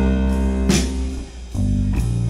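A live blues band playing an instrumental passage between sung lines, with guitar and bass over keyboard. A drum or cymbal hit comes a little under a second in, and the sound drops briefly about a second and a half in before the band comes back in.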